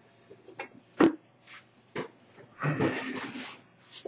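A two-part Ultracal gypsum-cement mold knocking and scraping against a tabletop as it is handled and turned over: sharp knocks about one and two seconds in, a rough scrape lasting about a second near the three-second mark, then a small knock as it is set down upside down.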